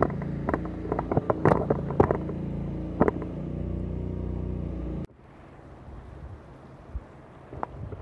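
A steady low motor hum with close knocks and rustles from the camera being handled. It cuts off abruptly about five seconds in, leaving fainter outdoor noise with a few clicks.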